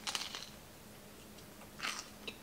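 A crunchy bite into toasted sourdough tuna toast, with a crackly crunch right at the start. Near the end comes one more short crunch.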